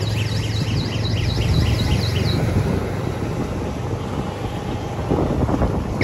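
Steady motor-vehicle engine hum and road noise heard while riding along a street, with wind on the microphone. In the first two seconds a high, warbling electronic chirp repeats about four times a second, then stops; the road noise swells near the end.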